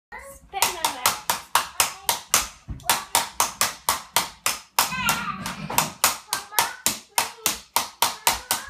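A child clapping steadily, about four claps a second, in a small room, with a brief vocal sound from the child about five seconds in.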